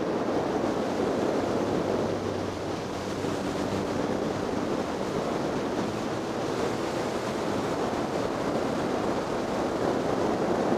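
Steady rush of wind over the microphone of a camera on a motorcycle at road speed, with the motorcycle's engine running faintly beneath it.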